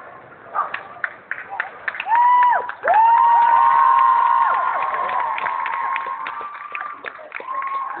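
Audience cheering and clapping, with long high-pitched screams from about two seconds in: one short, then several overlapping ones held for three seconds or more.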